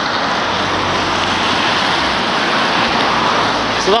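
Steady hiss of traffic tyres on a wet road.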